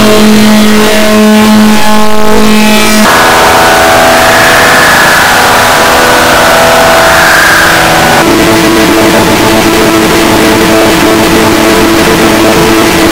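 Very loud, heavily distorted and clipped sound: held droning tones over a dense wash of noise. The pitch shifts about three seconds in and again about eight seconds in.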